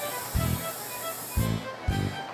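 Water hissing from a garden hose watering wand for about a second and a half, cutting off suddenly, over light background music with a steady bass beat.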